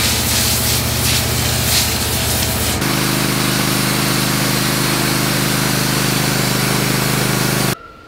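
Wood-Mizer LT portable bandsaw mill running, its engine and band blade sawing through a log. About three seconds in, the sound changes abruptly to a steadier engine tone, and it cuts off suddenly near the end.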